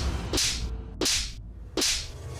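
Dramatic whip-crack swish sound effects, three in quick succession about two-thirds of a second apart, each a sharp crack that trails off into a hiss.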